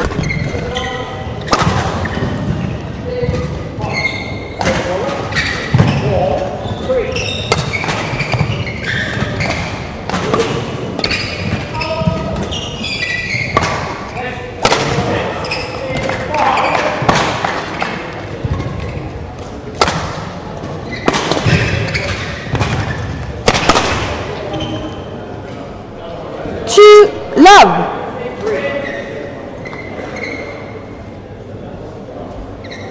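Badminton being played in a large, echoing sports hall: a string of sharp racket strikes on the shuttlecock and thuds of players' footwork, with shoe squeaks on the court floor. Two loud short squeals near the end.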